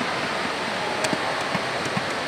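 Steady wash of background noise in a large indoor sports hall, with a few faint knocks about a second in and near the end.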